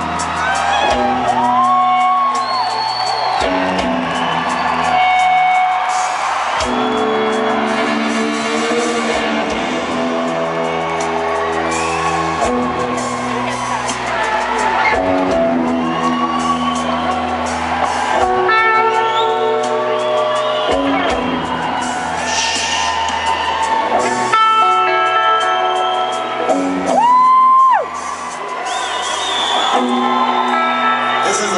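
Rock band playing live in an arena, heard from the crowd: electric guitars holding chords that change every couple of seconds over drums and bass, with some whoops.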